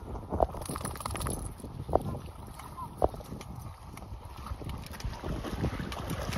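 Wind buffeting the microphone over dogs splashing as they wade through shallow river water, with three short sharp sounds about half a second, two seconds and three seconds in.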